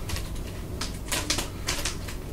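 Irregular short, sharp clicks and rustles, about six in two seconds, over a steady low hum.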